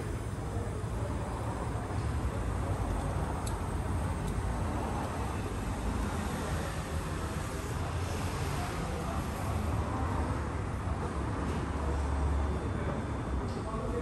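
Steady rushing hiss of compressed air from a cylinder leak-down tester flowing into the cylinder of a VW EA111 1.6 eight-valve engine, over a steady low rumble. The air is escaping past a valve that is still not fully closed, so the cylinder is not sealing.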